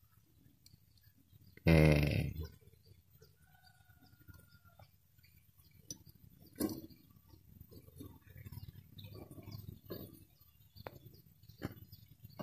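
A short grunt from the technician about two seconds in, then a run of faint clicks and taps as small parts are worked onto an embroidery machine's needle bar.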